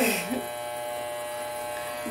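A steady electric buzz, a low hum with many even overtones, runs under a short vocal sound at the start.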